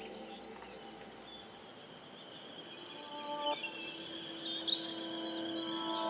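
Quiet electronic music intro: after a soft lull, held synth notes enter about halfway through. Quick chirping, bird-like high sounds flutter above them near the end.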